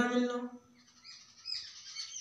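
A man's voice trailing off, then, after a short quiet gap, a bird giving a run of faint, high chirps in the background during the second half.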